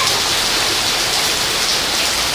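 Heavy rain falling steadily on the wet ground, a loud, even hiss.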